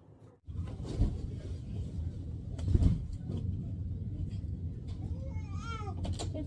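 A steady low rumble begins suddenly about half a second in and runs on, with a thump about a second in and a louder one near three seconds. Near the end, a short wavering cry rises and falls over it.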